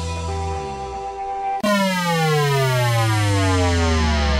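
Radio show intro jingle: held synthesizer tones, then about one and a half seconds in a long synth tone starts suddenly and sweeps steadily downward in pitch.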